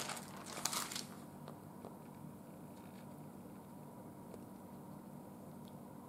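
Faint rustle and a few light clicks of a black plastic microwave meal tray being handled in about the first second, then quiet room tone with a low steady hum.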